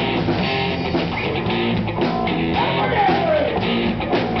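Live rock band playing loudly: distorted electric guitar, bass guitar and drum kit. About two and a half seconds in, a note slides down in pitch.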